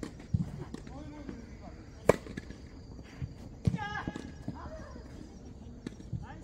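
A tennis ball struck by a racket: one sharp, loud pop about two seconds in. Softer thuds of ball bounces and footsteps on the court come around it.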